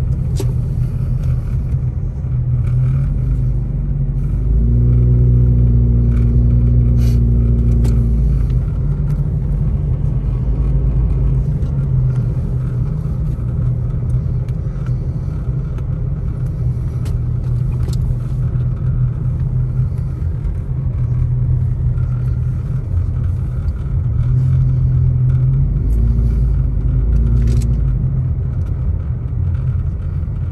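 Steady low rumble of a vehicle's engine and tyres on a snow-covered road, heard from inside the cabin while driving slowly. An engine drone swells for about four seconds roughly five seconds in, and again for a few seconds near the end.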